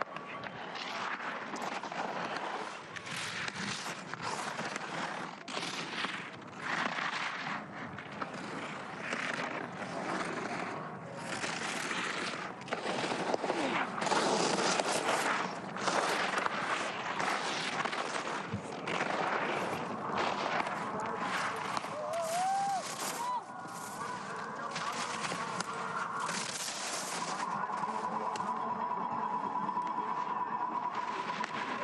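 Giant slalom racing skis carving on hard, icy snow: a rasping scrape of the edges with each turn, about once a second, loud and uneven from turn to turn.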